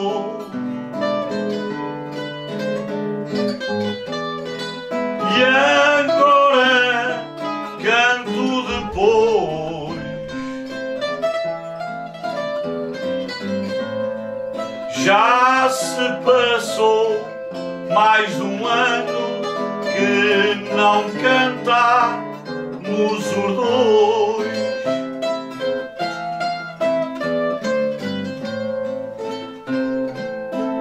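Acoustic guitar and a second plucked string instrument playing a steady accompaniment, with a man singing improvised verse in phrases through the middle and the instruments carrying on alone between and after.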